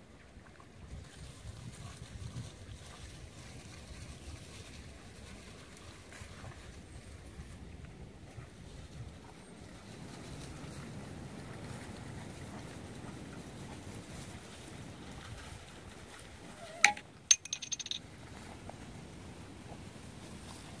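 Wind rumbling on a phone's microphone outdoors. Near the end come two sharp knocks about half a second apart, then a brief high rattle.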